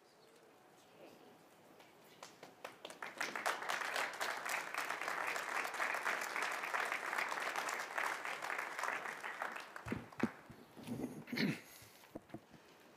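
Audience applauding, swelling up about three seconds in and dying away near ten seconds. A few low thumps follow near the end.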